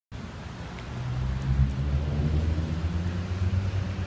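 A road vehicle's engine running close by: a low, steady rumble that grows louder about one and a half seconds in.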